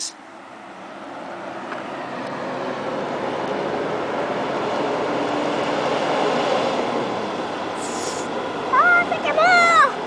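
Fire engine driving past on a road, its engine and tyre noise swelling over several seconds and then easing off, with a short hiss about eight seconds in.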